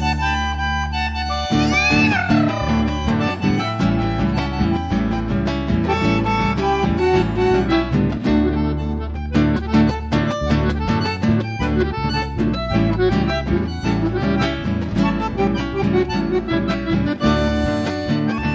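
Instrumental break of a folk song: a bandoneon plays the melody over acoustic guitar accompaniment.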